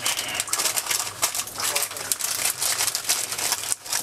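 Parchment paper crinkling and crackling irregularly as it is folded and pressed by hand into a packet around roasted peanuts.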